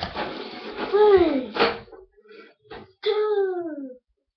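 A girl's voice making two drawn-out vocal sounds that fall in pitch, like a long 'oooh', after a stretch of noise. The second sound is longer and cuts off suddenly near the end.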